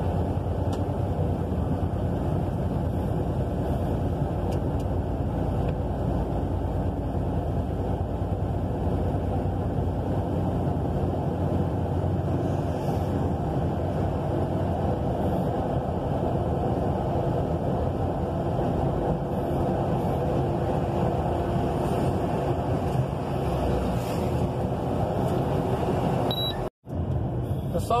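Steady drone of a truck's engine and road noise heard inside the cab while cruising on the highway, with an instant's break near the end.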